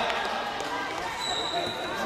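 Voices calling out across a large sports hall, with a thump just after the start. In the second half, a thin high tone lasts under a second, likely a shoe squeaking on the mat.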